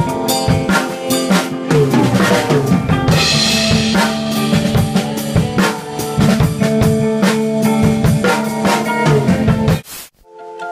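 Hard rock band playing live in a practice room, recorded on a phone: a drum kit hit hard and fast under held chords, with a cymbal wash about three seconds in. The music cuts off suddenly just before the end.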